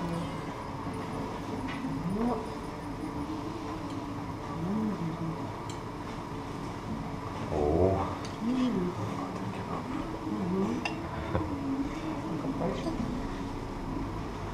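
Restaurant room sound with faint voices rising and falling, and a few light clinks of crockery in the second half as plates with clay pots are set on the table.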